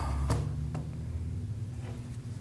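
Faint handling of a laptop as its lid is lifted open: a low bump at the start and two soft clicks soon after, then quiet room tone.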